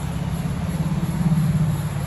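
A low, steady rumble that swells slightly toward the middle and eases near the end.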